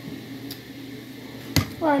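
A plastic drink tumbler knocked down once onto the table about one and a half seconds in, over a faint steady background hum.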